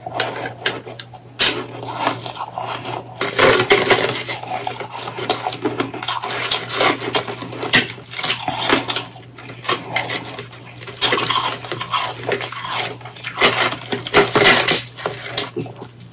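Powdery frozen ice crunching as chunks are squeezed and crumbled in the hands, in a run of uneven crackly bursts with short pauses between.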